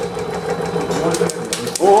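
Laboratory shaking table running under a balsa-wood model tower during an excitation run: a steady mechanical hum, with a few sharp ticks in the second half. A voice calls out right at the end.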